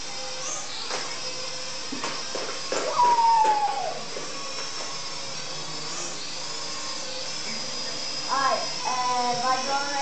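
SNAPTAIN S5C toy quadcopter's propeller motors in flight, a steady high whine that shifts in pitch as the drone moves. A louder falling tone comes about 3 s in, and voices come near the end.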